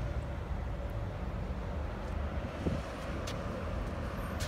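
Steady low rumble of road traffic passing nearby.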